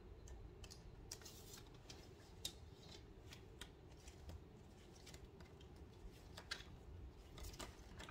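Faint, irregular clicks and rustles of a plastic CD jewel case being opened and its paper booklet handled.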